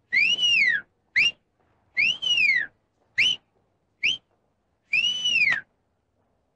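A person whistling through the fingers: six sharp whistles in a row, short rising ones mixed with longer ones that rise and then fall.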